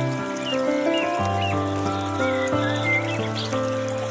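Slow, relaxing piano music of held notes over a low bass line that changes every second or so, with a few short high chirps in the middle. Water trickles from a bamboo fountain in the background.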